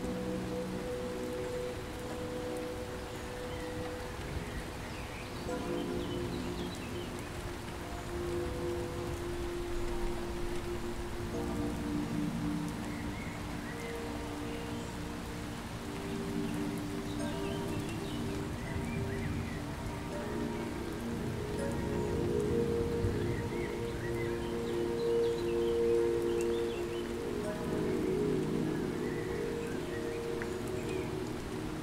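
Steady rain ambience under soft music of slow, held chords that change every few seconds.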